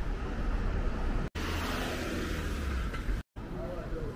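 City street ambience: steady traffic noise with a low rumble. It drops out completely twice, very briefly, at edit cuts, about a second in and near the end.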